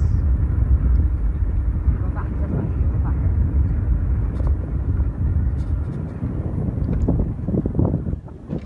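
Loud, rumbling wind buffeting on the microphone mixed with vehicle and road noise while riding a two-wheeler along a street.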